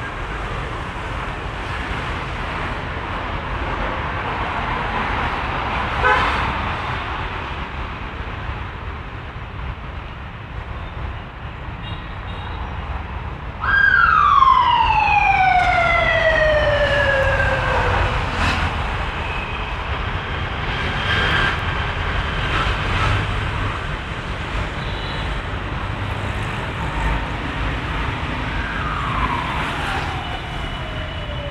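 Steady distant city traffic rumble. About halfway through, a siren starts suddenly on a high tone and slides slowly down in pitch over about four seconds, and it starts falling again near the end.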